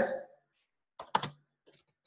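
A few keystrokes on a computer keyboard, bunched together about a second in, with a couple of fainter taps just after. The tail of a spoken word is heard at the very start.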